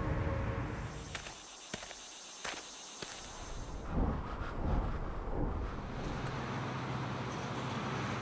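End-card sound design: tuned music fading out, then sparse clicks over faint high steady tones, a few whooshes a little after the halfway point, and a low steady hum that cuts off suddenly just after the end.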